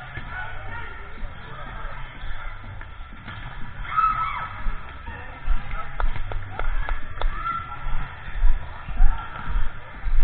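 Echoing gym sound during a volleyball rally: background music and voices, a few sharp slaps of the ball being played around the middle, and uneven low thumps from the action camera moving with the player.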